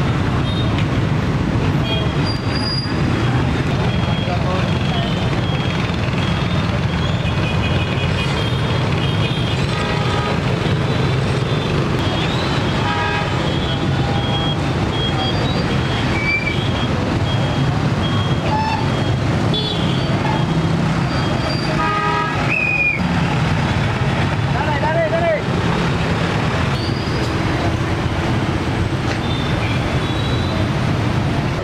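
Busy street traffic with steady engine and road noise, and motorbike and car horns tooting over and over throughout.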